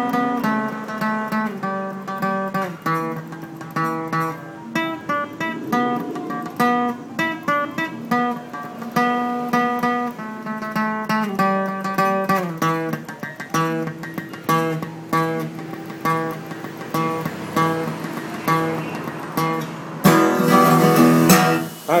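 Acoustic guitar playing a song's instrumental intro: separate notes picked one after another in a steady rhythm. About two seconds before the end it turns to louder full strumming.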